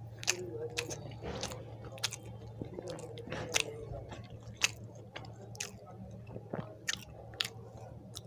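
Close-miked chewing of a mouthful of rice and mashed potato eaten by hand, with sharp, irregular wet mouth clicks and smacks a few times a second. A steady low hum runs underneath.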